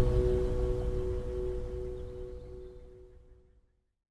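Acoustic guitar's final chord ringing out after the song ends, a few sustained notes fading steadily until they die away about three and a half seconds in.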